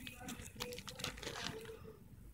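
Plastic binder pocket pages crinkling faintly under a hand, a scatter of small crackling clicks.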